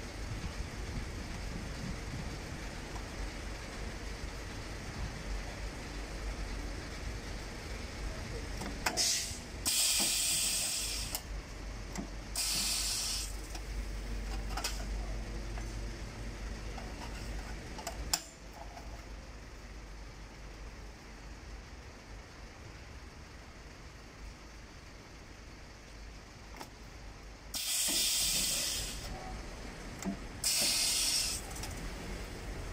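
An electromagnetic sheet metal brake being worked. A low steady hum runs for the first two-thirds and stops at a sharp click. Several short hissing bursts of a second or two and a few clicks come as the clamp bar and sheet are handled.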